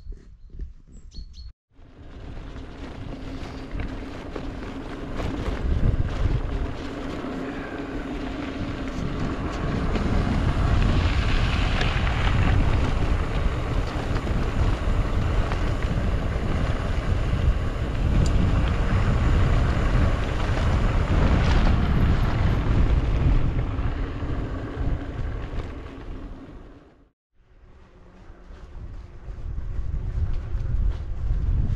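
Wind rushing over the microphone with tyres rolling on gravel as a bicycle descends a dirt track at speed. The noise swells over the first several seconds, holds steady, then eases off and drops out briefly near the end.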